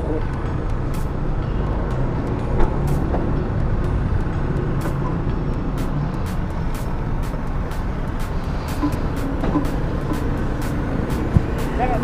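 Steady low rumble of vehicle engines and traffic, with a faint regular ticking about twice a second.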